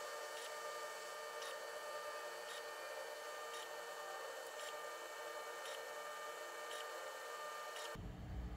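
EinScan SE structured-light 3D scanner running during a capture: a faint steady hum with several steady tones, and a soft tick about once a second.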